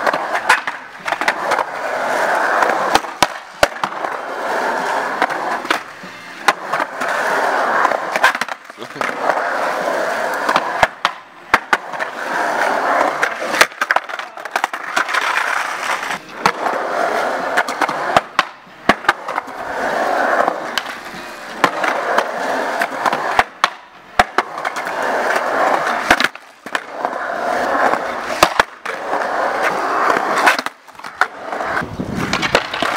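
Skateboard wheels rolling on concrete in runs of a few seconds, broken by many sharp clacks of the board popping and landing.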